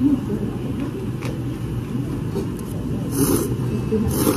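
Soba noodles being slurped through the lips, in two short hissing pulls near the end, over a steady low rumble of background noise.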